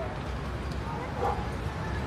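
A dog barking faintly over a low, steady rumble of street or car background.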